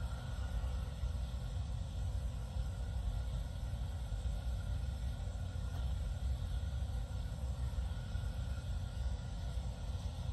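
Steady outdoor rumble and hiss picked up by a police body camera's microphone at a roadside, the low end strongest, with no clear single event.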